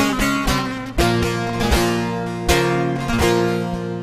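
Bağlama (long-necked Turkish saz) and acoustic guitar playing an instrumental passage of a Turkish folk song, with sharply accented strummed chords roughly every three-quarters of a second.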